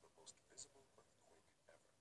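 Near silence: room tone, with two very faint short sounds in the first second.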